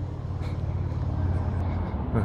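A vehicle's engine running steadily: an even, low hum.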